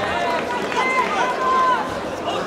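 Several voices shouting and calling out at once over arena crowd noise, some calls drawn out and held.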